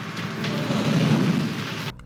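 Sound effect of a huge impact in an animated fight: a deep, thunder-like rumbling noise that swells in the middle and cuts off abruptly just before the end.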